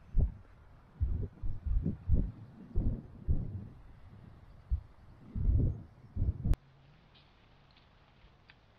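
Wind buffeting the microphone in irregular low rumbling gusts on an exposed cliff top, then a single sharp click about six and a half seconds in, after which only a faint low background hiss remains.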